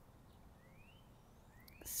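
Faint birdsong in a quiet yard: a couple of thin, rising chirps, one about half a second in and another near the end.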